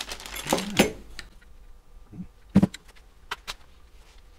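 Hard plastic and metal vise parts clicking and knocking as they are handled on a workbench. There are a few separate sharp knocks, the loudest about two and a half seconds in.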